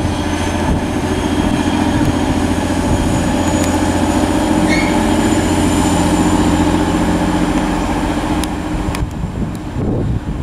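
Class 185 diesel multiple unit moving away from the platform, its diesel engines running with a steady low drone over wheel and rail rumble. The sound falls away sharply about nine seconds in as the train recedes.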